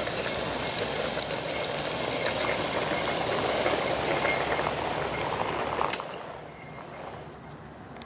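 A steady rumbling noise that ends abruptly with a click about six seconds in, leaving a quieter outdoor background.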